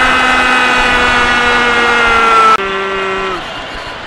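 A sports commentator's long drawn-out goal call ("gooool"), one shouted vowel held on a slowly falling pitch. It cuts off abruptly about two and a half seconds in, and a shorter held call on a lower pitch follows and ends under a second later.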